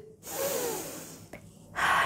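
A woman drawing a long, deep audible breath in, lasting about a second, acted out as the fish taking water in through its gills. The start of a spoken word follows near the end.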